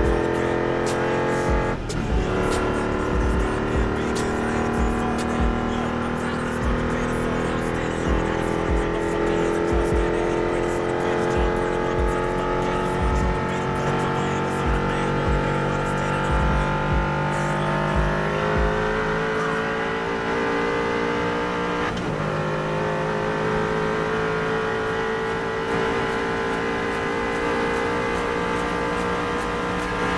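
Supercar engine heard from inside the cabin under full-throttle acceleration at very high speed, its pitch climbing slowly. There are two brief breaks for upshifts, about two seconds in and about twenty-two seconds in.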